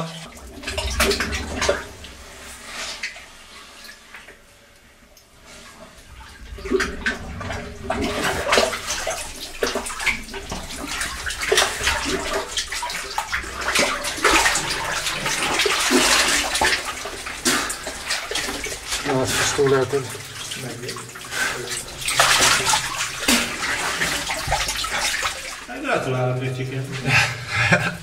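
Muddy water sloshing and splashing in a small cave sump pool as a caver wades and dives through it. The sound starts faint, then turns steady and louder after the first few seconds, with a few brief voices near the end.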